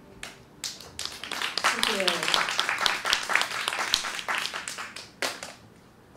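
Small audience applauding as the song ends, swelling quickly and thinning out near the end, with a voice calling out briefly about two seconds in.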